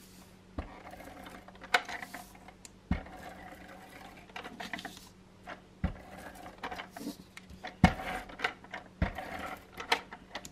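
Scotch adhesive transfer tape gun being run over paper, its reel mechanism whirring and rasping as it lays down a strip of double-sided tape. Six sharp clacks come at irregular spacing as the gun is pressed down and lifted off.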